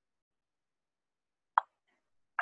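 Near silence, then a single short, sharp click about one and a half seconds in, typical of a computer mouse button being pressed.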